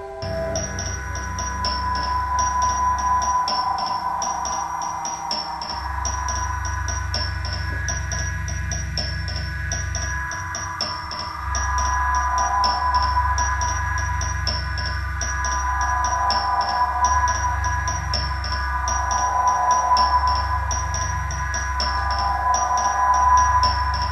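Improvised experimental electronic music from keyboard and circuit-bent instruments: an even clicking pulse of about two beats a second runs over a low drone and several held tones.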